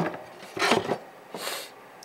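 Handling of a wooden mandolin body: a sharp knock, then brief rubbing and scraping against the wood.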